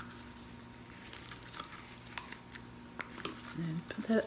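Faint scattered crackles and soft clicks of nitrile-gloved hands flexing and peeling a silicone soap mold to work a melt-and-pour soap bar out of its cavity.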